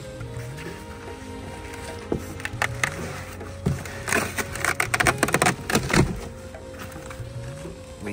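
Background music with a repeating bass pattern, over the crackling and scraping of foam packing sheets and a cardboard box as things are pulled out of it, thickest and loudest from about two to six seconds in.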